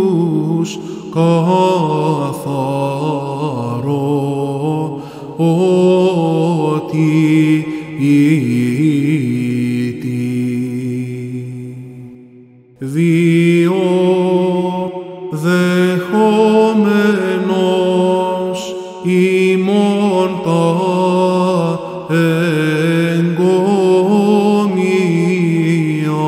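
Greek Orthodox Byzantine chant: a male cantor sings long, drawn-out melismatic phrases in Greek over a steady low held drone (the ison). About halfway through the singing breaks off briefly for a breath, then resumes.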